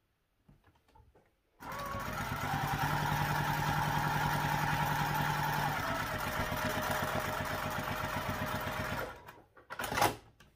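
Electric sewing machine stitching a seam down a folded fabric strip. After a few faint clicks, the machine runs at a steady pace for about seven seconds, then stops, followed by one sharp click near the end.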